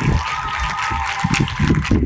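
Audience applauding, a dense steady clatter of clapping, with a faint steady high tone underneath that stops near the end.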